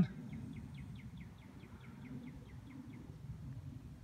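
A small songbird trilling faintly: a string of about fifteen short, high, down-slurred notes, about five a second, lasting about three seconds.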